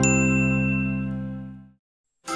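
The closing chord of a short music jingle, struck with a bright ding at the start and then ringing out, fading away to silence shortly before the end.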